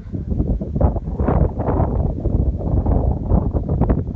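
Wind buffeting the microphone: a loud, gusty rumble that surges about a second in and stays rough and uneven.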